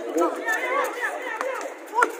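Indistinct chatter and calls from several players and onlookers, with a few faint sharp knocks.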